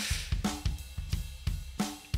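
A recorded drum kit playing quietly: a cymbal wash over several low drum strokes.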